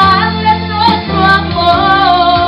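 A woman singing into a microphone over electronic keyboard accompaniment, her voice wavering in a held melody over sustained low bass notes.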